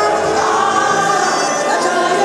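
Live gospel music: a woman sings into a microphone over a full band, with voices singing together.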